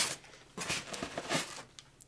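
Hand rummaging inside a cardboard monitor box against the foam packing: a few short, faint rustles and scrapes.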